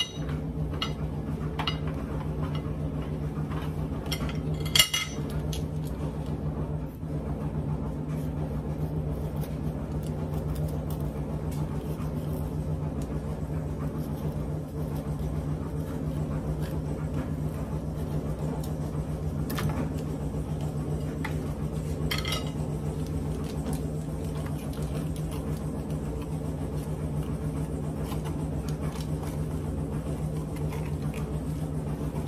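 A steady low hum runs throughout, with a few sharp clicks and taps of a kitchen knife cutting bell peppers against the countertop, the clearest and most ringing about five seconds in.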